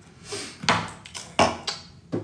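Toiletry containers being picked up and handled: a brief rustle, then two sharp knocks, the first a little under a second in and the second about 0.7 s after it.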